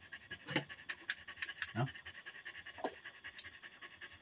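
Quiet eating sounds: a few scattered light clicks of metal spoons against a bowl, one short murmured word, and a steady high chirring of night insects underneath.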